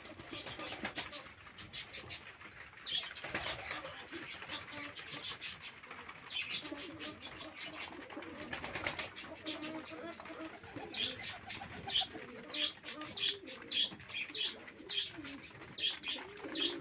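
Domestic pigeons in a loft cooing, with a few brief flurries of wing flapping and short high chirps throughout, thickest in the last few seconds.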